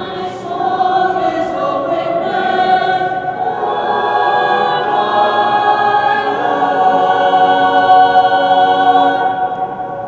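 Mixed high school choir singing in parts, settling into long held notes that grow loudest about eight seconds in and then fade near the end.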